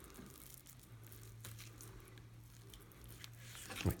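Fillet knife cutting down through a northern pike fillet along the Y bones on a plastic cutting board: faint, scattered soft crunching and clicking of the blade in the flesh, over a faint steady low hum.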